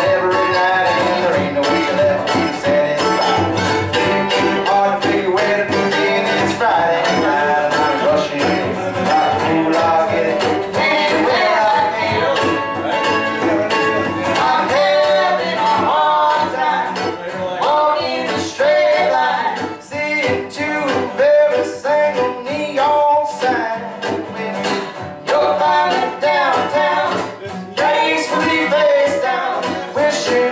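Live acoustic string band playing a bluegrass-style song: strummed acoustic guitar and picked mandolin, with singing.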